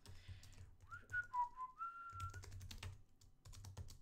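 Keystrokes on a computer keyboard typing code, with a short whistled tune of a few notes about a second in.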